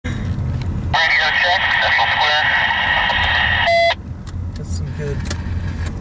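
A two-way radio transmission: a voice through static, heard inside a moving car over the low hum of the engine and road. The transmission starts about a second in and cuts off suddenly with a short beep just before four seconds.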